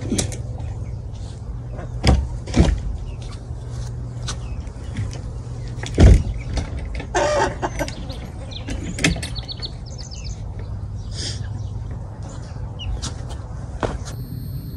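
Large plywood door of a wooden chicken coop being swung shut and pushed into place. A couple of wooden knocks come about two seconds in and a louder thump about six seconds in, over a steady low rumble.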